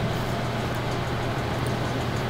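A steady low hum with a hiss over it, unchanging in level.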